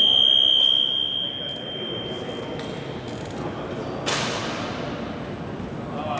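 A basketball referee's whistle blast: one steady, shrill tone, loudest for about the first second, then trailing off over the next second or so in an echoing gym. About four seconds in comes a single sharp crack with a ringing echo.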